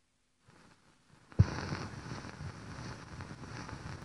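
Gramophone stylus set down on a spinning 78 rpm shellac record: a sharp thump about a second and a half in, then steady hiss and crackle of surface noise from the lead-in groove before the music starts.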